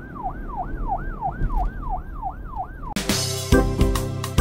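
A siren wailing in quick repeated sweeps, each rising sharply and then falling, about three a second. It cuts off suddenly about three seconds in, and music with piano comes back in.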